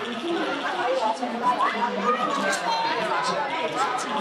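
Crowd chatter on a busy pedestrian shopping street: many passers-by talking at once, with several voices overlapping close by.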